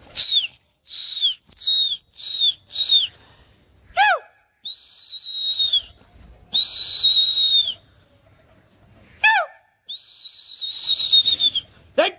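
A person whistling loudly to a flying pigeon flock: five short high whistles, each dropping at its end, then three long held whistles, with two quick swooping whistles that fall steeply in pitch about four and nine seconds in. This is the pigeon flyer's whistle call to his birds in the air.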